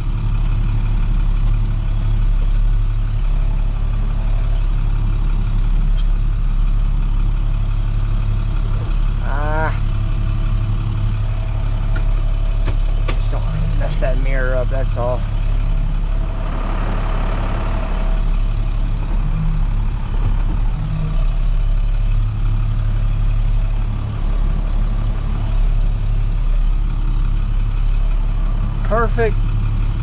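Roll-off truck engine running steadily, heard from inside the cab as an even low hum.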